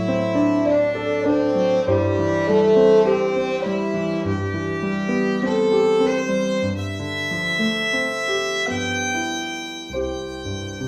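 Violin playing a slow, sustained bowed melody of long, joined notes, over a piano accompaniment with low bass notes beneath it. The loudness dips briefly near the end before a new note starts.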